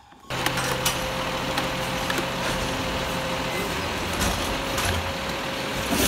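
Garbage truck sound: a steady hiss with a faint steady hum under it. It starts abruptly just after the start and cuts off sharply near the end.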